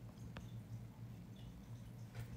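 Quiet room tone: a faint steady low hum, with one small click about a third of a second in.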